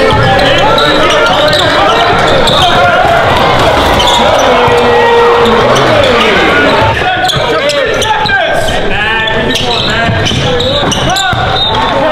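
Basketball game sound in a gym: a basketball dribbling on the hardwood court amid players' and spectators' voices.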